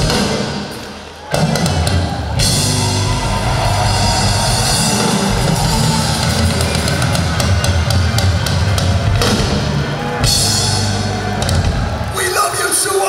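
Live military band with drum kit and horns playing a rock-and-roll number. The sound dips briefly about a second in, then the full band with drums comes back in.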